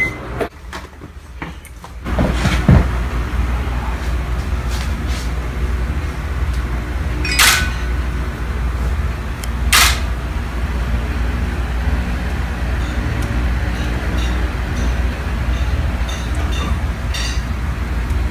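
Steady low room hum with two sharp DSLR camera shutter clicks about two seconds apart near the middle, and a single knock about three seconds in.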